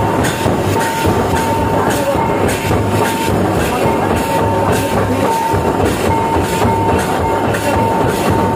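Loud, dense hand drumming on double-headed barrel drums (Santali madal, tumdak') in a fast dance rhythm, with a thin steady high tone that comes and goes above it.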